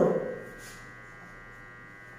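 Steady electrical hum with a faint buzz, heard once the tail of a spoken word fades at the very start.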